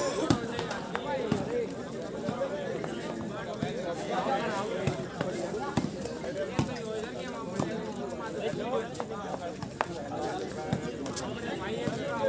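Overlapping voices of players and onlookers calling out during a volleyball rally, with a few sharp slaps of hands striking the ball.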